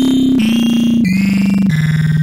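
Oscilloscope music: a buzzy synthesized tone with hiss and many overtones, whose pitch steps down three times, about every two-thirds of a second. The stereo signal itself draws the mushroom and flower figures on the oscilloscope screen.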